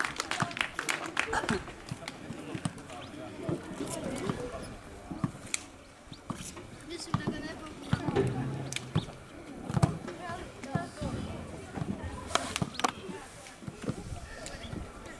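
Clapping trailing off in the first second or so, then faint distant voices of children talking and calling, with scattered sharp knocks and claps.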